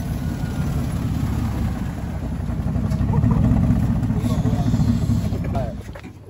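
Chevrolet pickup truck engine running as the truck drives up and pulls in, a steady low rumble that grows louder about three seconds in and stops suddenly near the end.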